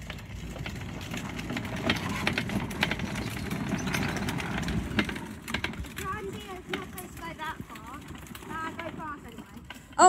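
Plastic wheels of a child's ride-on toy tractor rolling and rattling over a concrete path, louder in the first half and easing off after about five seconds.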